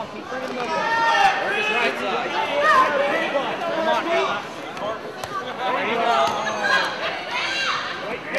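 Crowd of fight spectators yelling and shouting over one another, many voices at once with no single voice standing out.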